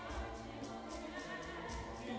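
Mixed choir singing, with hand drums keeping a steady beat of about four strokes a second.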